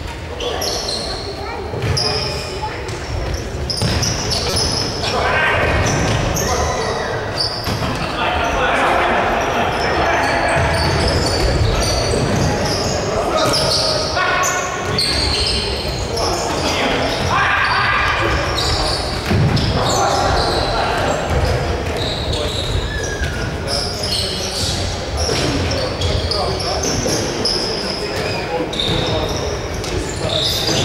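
Indoor futsal being played in an echoing sports hall: players shouting to each other, the ball being kicked and bouncing on the hard floor, and short high squeaks of shoes.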